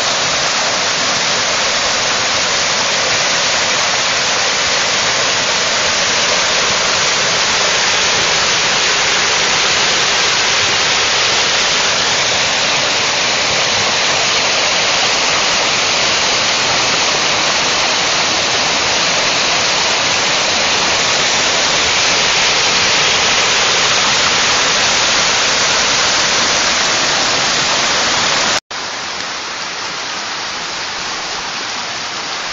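Mountain stream rushing over rocks and small rapids, a loud, steady rush of water. Near the end it breaks off for an instant and returns quieter.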